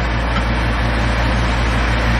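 Kitchen range hood exhaust fan running steadily on its highest setting, a constant low hum and rush of air, over burger patties sizzling in the frying pan.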